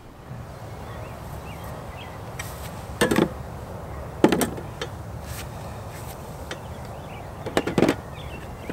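A power tool being packed into a hard plastic tool case: sharp clunks and clicks of plastic against plastic, one about three seconds in, another a second later, and a quick double knock near the end, over a low steady outdoor hum.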